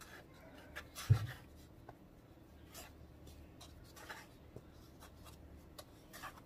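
Hands dredging raw chicken pieces in a bowl of dry flour breading: soft, scratchy rubbing and patting of flour against skin, with one dull thump about a second in.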